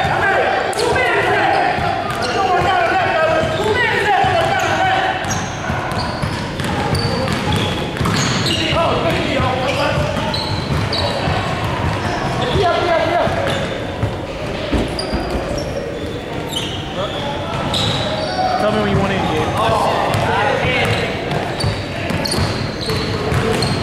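Basketball game sounds on a hardwood gym floor: a ball bouncing, short sneaker squeaks, and indistinct players' voices, all echoing in a large hall.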